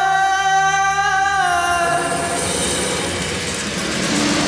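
Background score of a TV drama: a long held sung note that fades away about halfway through, giving way to a swelling wash of music.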